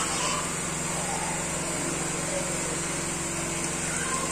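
A steady mechanical hum with an even hiss, constant throughout.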